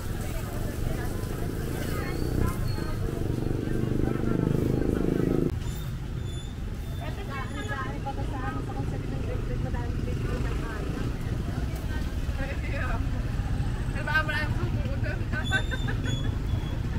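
Busy street-market ambience: scattered voices and chatter over a steady low vehicle engine rumble. The rumble is heavier at first and drops abruptly about five seconds in.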